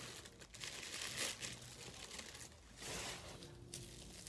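Thin yellow wrapping paper crinkling and rustling in the hands as a package is unwrapped, coming in several irregular spells of rustling.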